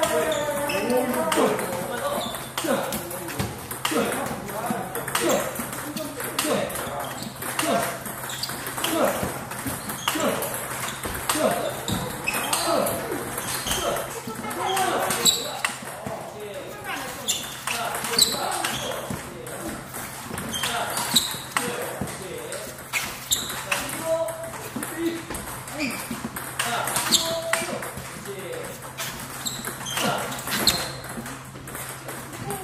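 Table tennis balls being struck with rubber paddles and bouncing on the table in a fast multiball drill, one sharp click after another, under a person talking throughout.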